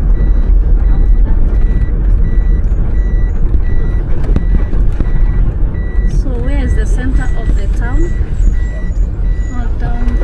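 Inside a moving minibus: steady engine and road rumble, with a short electronic beep repeating about twice a second. Voices talk briefly a little past the middle.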